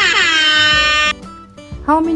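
A loud sound effect added in editing: a single pitched tone with many overtones that slides down in pitch, then holds and cuts off suddenly about a second in.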